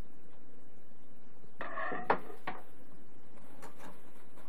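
Zebra 140Xi III Plus label printer's printhead being closed: a short metallic scrape about two seconds in, ending in a sharp latching click, then a few fainter clicks.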